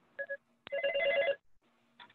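A phone ringing, heard through a participant's open video-call microphone: a brief beep, then a click and a short, fast-pulsing electronic ring lasting about two-thirds of a second.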